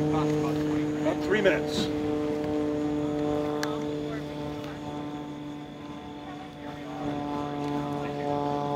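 Airplane passing overhead: a steady, low, many-toned hum that fades toward the middle and grows a little again near the end.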